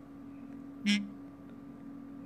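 A steady low hum, with one short, sharp sound about a second in.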